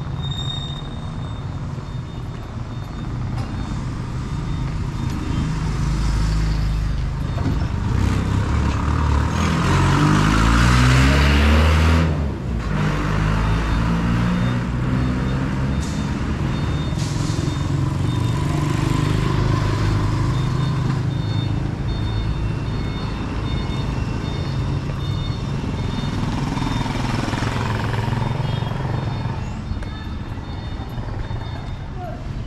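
A motor vehicle's engine passes close by. Its note slides in pitch as it goes and is loudest about ten to twelve seconds in, over a steady street-traffic hum.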